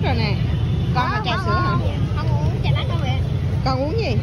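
Voices of people talking at a busy street stall, in short snatches over a steady low rumble.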